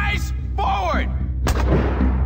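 Trailer sound design: a single heavy boom like a gunshot about one and a half seconds in, ringing out with a long decaying tail over a low steady drone. Before it, a man's voice is heard briefly.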